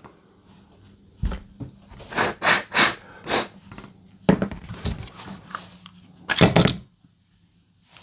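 Plastic housing parts of a Parkside X20V battery pack clicking and knocking together as they are handled and pulled apart: a string of separate taps and clacks, the loudest a double knock shortly after six seconds in.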